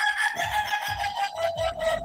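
A rooster crowing: one long drawn-out note that sinks slightly in pitch over nearly two seconds, heard through the video call's audio.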